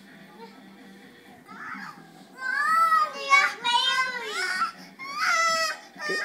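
A young child crying: a quiet start, then from about two seconds in a run of about four loud, high-pitched wails with short breaks between them.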